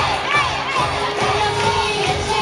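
Baseball crowd cheering, with children's high-pitched shouts rising and falling above it.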